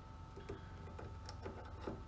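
A handful of faint, irregular small clicks of long-nose pliers working a CR2032 coin-cell battery loose from its clip holder on a circuit board.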